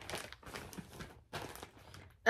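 Faint crinkling and rustling of a clear plastic zip-top project bag being handled, in short irregular bursts.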